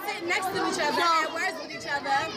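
Several young voices talking over one another: excited chatter among students.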